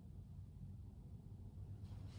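Faint, steady low rumble of room tone inside a parked car's cabin.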